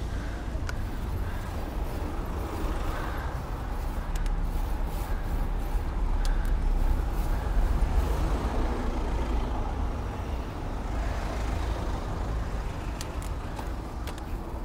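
Steady low rumble of car engines and road noise in a slow city traffic jam, heard close up from a bicycle passing between lanes of cars.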